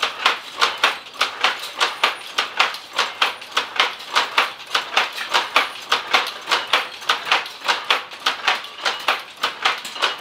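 An SLC powerloom with a dobby machine, running at speed: a steady, rhythmic clatter of sharp clacks several times a second from the shuttle picking and the sley beating up the weft.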